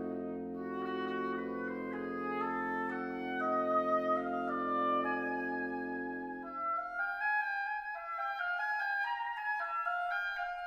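Wind quintet of flute, oboe, clarinet, bassoon and horn playing classical chamber music: a moving melody in the upper woodwinds over a long held low chord. The low chord stops about two-thirds of the way through, leaving the upper voices playing alone.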